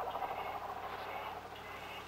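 Quiet background: a steady low hum and hiss, with a faint sound fading away in the first second.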